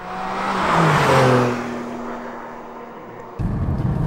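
A Porsche 718 with the naturally aspirated 4-litre flat-six passing by: the engine note and tyre noise swell to a peak about a second in, the pitch drops as it goes past, and it fades away. Near the end it cuts to the steady rumble of road noise inside the car at speed.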